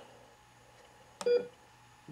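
One short electronic heart-monitor beep about a second in, led by a faint click. It is part of a steady beep every couple of seconds that marks a regular heartbeat.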